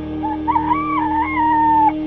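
A rooster crowing once, a call of about a second and a half that rises in a couple of steps and ends on a long, slowly falling note, over steady background music.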